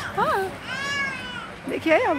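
A young child's high-pitched vocalising: a short squeak, then one long arching call, then another sharp call near the end.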